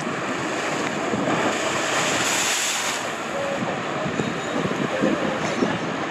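Water pouring out of the exits of three enclosed speed slides into a splash pool: a steady splashing rush, loudest about two to three seconds in.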